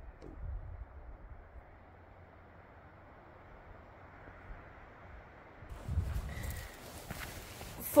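Faint outdoor hiss with a few low microphone rumbles near the start and again about six seconds in, then a single spoken word at the very end.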